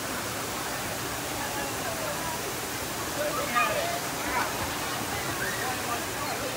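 Steady rush of water from a fountain cascading into a swimming pool, with people's voices calling out over it around the middle and a laugh at the end.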